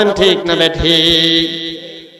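A man's voice chanting a sermon line in a melodic, sing-song style, holding one long note in the middle of the phrase and then trailing off near the end.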